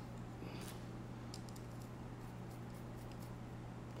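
Faint, scattered light clicks and taps of a small screw and carbon-fibre frame parts being handled and fitted by hand, over a low steady hum.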